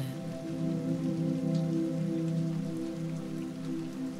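Soft ambient meditation music: a low chord of several notes held steadily, over a constant hiss of rain.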